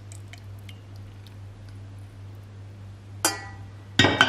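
Thick homemade cornstarch glue poured from a stainless steel saucepan into a glass jar, heard as scattered faint ticks over a steady low hum. About three seconds in, a single sharp, ringing metal clink.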